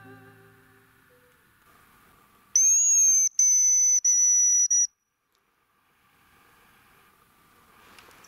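A high, thin whistled hazel grouse call, typical of a hunter's hazel grouse decoy (manok), about two seconds long: one long note, then three shorter ones, ending abruptly. Background music fades out in the first second, and only faint forest noise follows the call.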